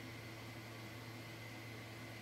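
Faint, steady background hiss with a low electrical hum: the recording's room tone, with no distinct sound event.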